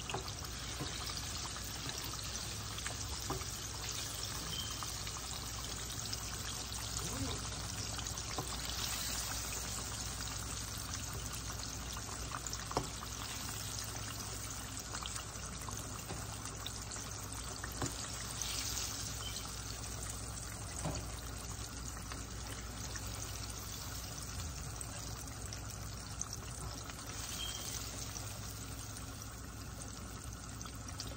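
Chicken tenders deep-frying in a skillet of hot oil: a steady bubbling sizzle, with a few sharp pops.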